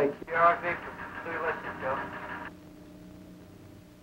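A man's voice sent over a short-wave radio link, calling out a call sign, thin in sound, which cuts off abruptly about two and a half seconds in. A faint steady hum with a low held tone remains afterwards.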